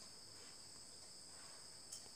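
Near silence: a faint, steady high-pitched chirring of crickets in the background, with one faint click near the end.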